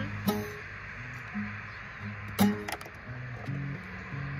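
Acoustic guitar played alone between sung lines: a chord strummed twice, about two seconds apart, with single low bass notes picked in between.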